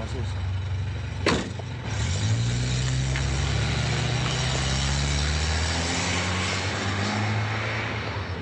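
A single sharp knock about a second in, then a small car's engine rising in pitch as it pulls away, running steadily, and fading near the end.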